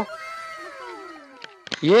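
A cat meowing once: a single long call that falls in pitch.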